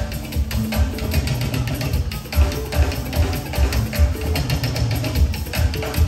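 Live band music with a steady drum and bass beat, instrumental at this point with no singing.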